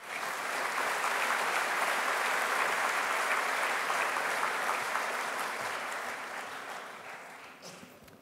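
A large audience applauding, a dense even clapping that starts at once, holds for about five seconds and then fades out.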